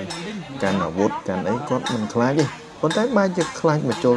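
A young man crying and whimpering in fear of a needle, his voice rising and falling and breaking, with other people talking around him.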